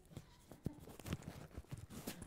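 Scattered faint clicks, knocks and rustles of people handling things and shifting in a room.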